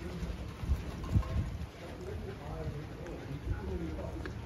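Light rain falling steadily, with soft footsteps on wet outdoor paving.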